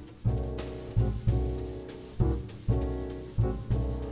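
Jazz combo intro on upright bass and piano: a run of accented struck notes and chords, each dying away before the next, about seven in the span.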